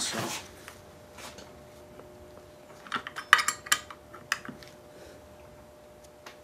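Steel wrench and clutch Z-bar parts clinking against each other as a ball-stud nut is handled on the bracket, with a quick flurry of sharp metal clinks about three seconds in.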